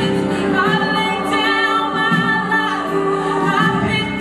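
A woman singing a gospel worship song with a live band of acoustic guitar, bass, electric guitar and drums, holding long notes that step and glide in pitch.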